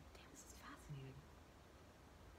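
Near silence: room tone with a faint breathy whisper and a short low hum from a woman's voice about a second in.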